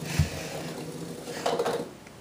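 Small battery-powered toy robot bug buzzing steadily on a tile floor, its tiny motor giving an even mechanical hum. A soft knock shortly after the start.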